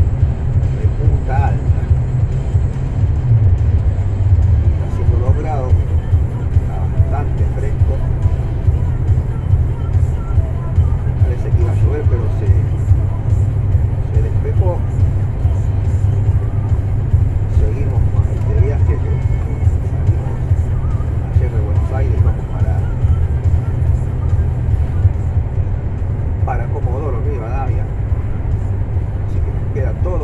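Steady low drone of a truck's engine and tyres on the road, heard from inside the cab while cruising on a highway.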